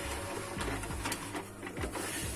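Epson inkjet printer printing a sheet of PVC ID-card paper: the mechanism runs with a steady low hum and a few light clicks as the sheet feeds and the print head works.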